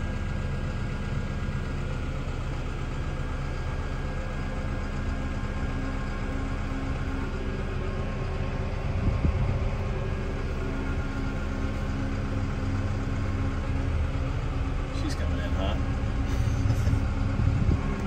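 Brand-new Cat D1 dozer's diesel engine idling steadily just after start-up, heard from inside the cab as a steady low hum. A brief louder, rougher rumble comes about nine seconds in.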